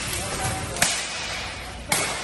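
Steel weapons striking plate armour in a buhurt melee: two sharp metal impacts about a second apart, the second near the end, over the continuous clatter of the fight.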